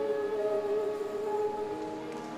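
A woman singing the held final note of a song into a microphone, with sustained accompaniment chords underneath, the sound gradually fading as the song ends.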